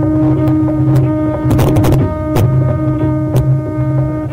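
Steady drone of a tambura, its pitch and overtones held without change. A few sharp strokes cut across it, with a quick cluster of them near the middle.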